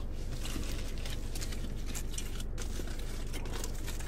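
Foil-lined burger wrapper crinkling faintly as it is handled and opened, over a steady low hum.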